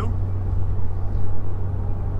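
Steady low drone of road and engine noise inside the cabin of a lifted Mercury Grand Marquis on 31-inch tires, cruising at about 70 km/h.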